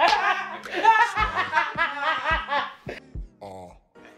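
A woman laughing in quick repeated bursts, dying away about three seconds in.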